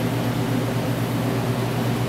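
Steady machine hum with an airy hiss, like a fan or motor running, unchanging throughout.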